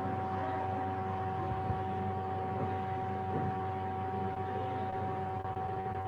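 Steady background hum and hiss with two steady high tones running through it, without change.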